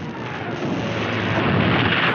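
Cartoon sound effect of an explosion and crash as a wooden tower is blown apart and falls: a dense, rumbling noise that swells steadily louder.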